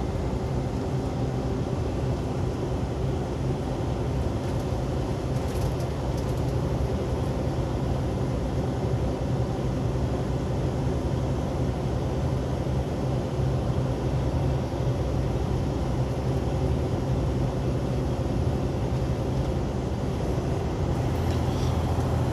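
Steady drone of a semi-truck's diesel engine with tyre and road noise, heard from inside the cab while cruising at an even speed.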